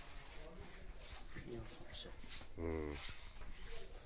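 A man's short wordless vocal sound, one low drawn-out tone a little past halfway, over faint room noise with a few light clicks.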